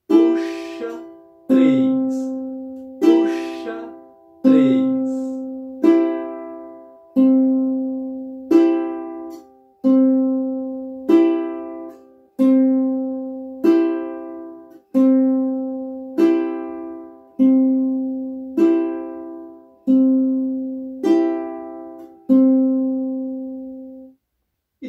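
Ukulele fingerpicked slowly on a C chord in the "puxa 3" pattern: strings 4, 2 and 1 plucked together, then string 3 alone with the index finger, alternating. There is about one pluck every 1.3 seconds, each left to ring out.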